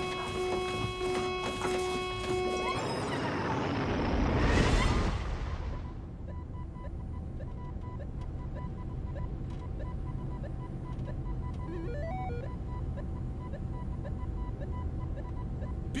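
Film sound effects of a spaceship taking off. Held background-music chords break off about three seconds in into a rising whoosh that peaks about five seconds in. Then a steady low engine rumble runs on with a faint regular electronic beeping, about two beeps a second, and a short run of stepped computer blips later on.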